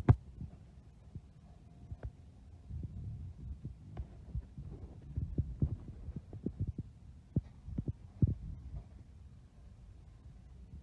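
Handling noise and footsteps on a handheld phone's microphone as it is carried past the shelves: a low rumble with irregular soft thumps and light knocks, thickest between about five and eight and a half seconds in.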